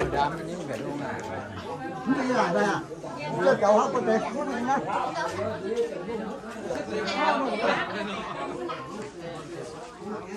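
Several people talking at once in overlapping chatter.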